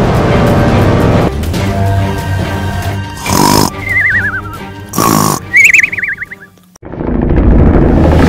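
Background music, with two cartoon snore sound effects in the middle. Each is a loud snoring inhale followed by a wavering, falling whistle on the breath out. The sound drops away briefly, then loud music comes back near the end.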